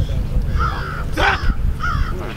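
A crow cawing three times in quick succession, the middle caw the loudest and harshest.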